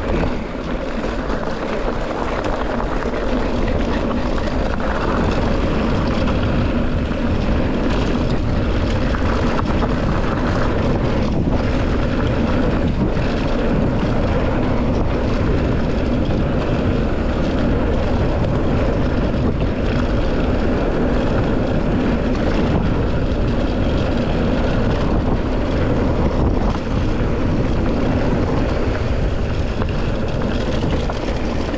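Mountain bike rolling fast along a dirt trail: a steady rumble of the tyres on dirt, with wind buffeting the microphone.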